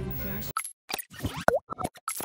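Cartoon-style outro sound effects: a quick run of short plops and pops, one of them swooping down and back up in pitch. They follow the fading tail of the report's background music.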